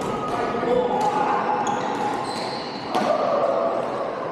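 Badminton rackets striking shuttlecocks, a run of sharp cracks from several courts, echoing in a large sports hall; one strike about three seconds in stands out as the loudest.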